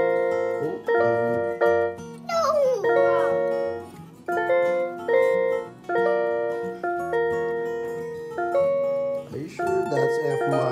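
Chords played on a Yamaha PSS-170 portable electronic keyboard. Each chord is struck and held, then the next is struck, about nine in all, changing every second or so, with a short gap near the middle. A child's brief gliding vocal sound comes about two and a half seconds in.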